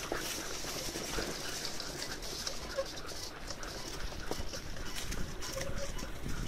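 A team of harnessed huskies running on a leaf-covered forest trail: a steady rustle and scuffle of many paws through fallen leaves, full of small clicks, with the rig rolling along behind them.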